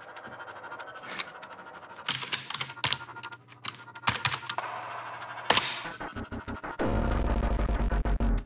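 Keys clicking in quick runs of typing on a computer keyboard, over a film score. The music swells louder near the end.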